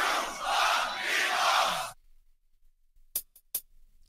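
About two seconds of loud, noisy crowd cheering, then, after a short silence, a quick run of about four metronome clicks.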